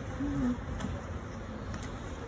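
Honeybees buzzing around an open hive, a steady hum with one short, louder buzz just after the start.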